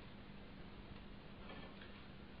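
Faint room tone and recording hiss with a low steady hum.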